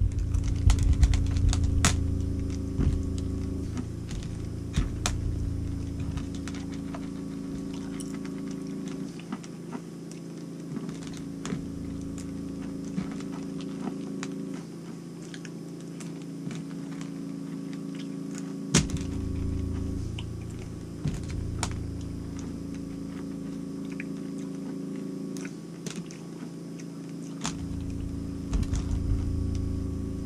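Skittles candies clicking and tapping against a plate in light, irregular clicks as they are picked up one at a time, with one louder knock past the middle. A steady low hum runs underneath.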